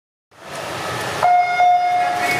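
Electronic starting horn of a swim race sounding a steady, sudden tone about a second in, the start signal that sends the swimmers off the blocks. Steady background noise runs beneath it.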